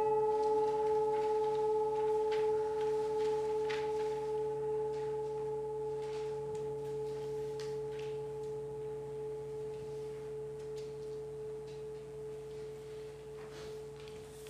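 A bell or chime tone ringing out and slowly fading away, one clear pitch with a fainter higher overtone.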